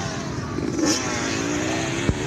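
Dirt bike engines running on a motocross track, with the pitch climbing in the second half as a bike revs.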